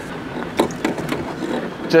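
Riese & Müller Load4 75 electric cargo bike rolling over a pothole on a rough lane: steady rolling noise with a handful of short knocks and rattles as the full suspension takes the bump.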